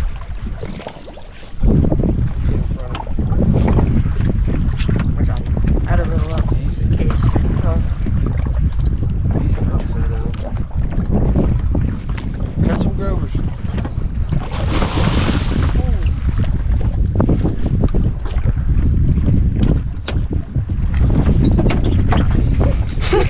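Wind rumbling on the microphone aboard a small fishing boat, loud and steady after a quieter first second or so, with a brief rushing hiss about two-thirds of the way through.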